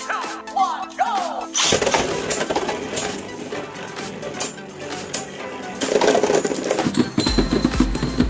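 Background music over Beyblade spinning tops launched into a plastic stadium about two seconds in. The tops whir and clatter against each other and the stadium wall, and near the end one top bursts apart.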